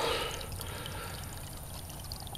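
Shallow creek water trickling steadily over stones.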